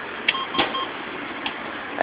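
A short electronic beep from a gas station fuel pump, with a few light clicks, over a steady background noise.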